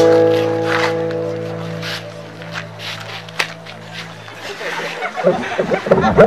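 A single held keyboard chord that fades slowly over about four and a half seconds, with a few scattered clicks. Loud voices break in during the last second.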